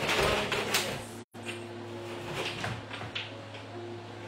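Rustling and scraping with a few light knocks, loudest in the first second, then a brief cut-out of all sound; fainter scattered clicks follow over a low steady hum.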